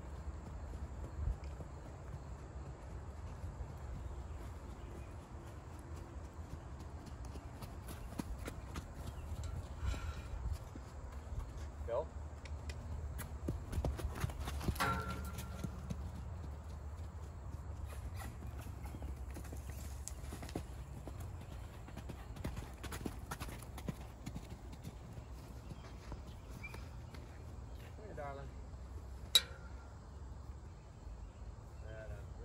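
Gypsy mare's hoofbeats on the soft dirt footing of a round pen as she moves loose around the handler, heard as many scattered short thuds and clicks over a low steady rumble. A single sharp click near the end stands out as the loudest sound.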